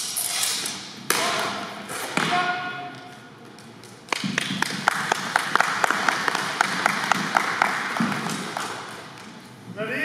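A sharp hit as the fencers' weapons strike at the start, followed by two more knocks about a second apart, then several seconds of clapping from onlookers in a large hall, fading out near the end.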